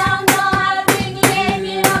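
A group of children singing a praise song, clapping their hands in time about three times a second.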